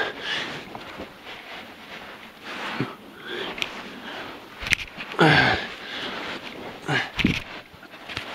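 A man breathing hard and groaning with effort while crawling through a tight sandy cave passage, with a loud groan falling in pitch about five seconds in. Short knocks and scuffs of his body and gear against sand and rock come between the breaths.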